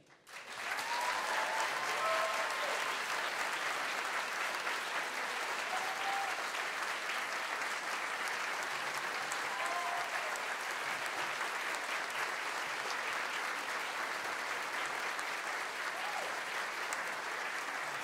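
Audience applauding steadily after a talk, starting just after the last words, with a few brief whoops over the clapping.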